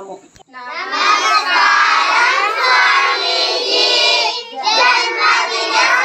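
A group of children singing together in unison, with a short pause about four and a half seconds in.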